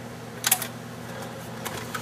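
A single sharp click about half a second in and a fainter one near the end, over a low steady hum.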